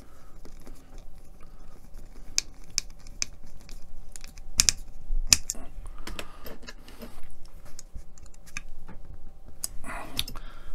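Small scattered clicks and taps of a hand screwdriver working a tiny screw into a scale-model truck chassis part, with the parts being handled in the fingers; a couple of sharper clicks come about halfway through.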